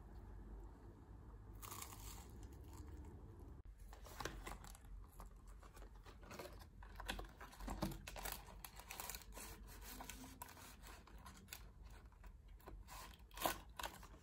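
Packaging being crinkled and torn open: a soft rustle begins under two seconds in, then dense short crackles follow for the rest of the stretch.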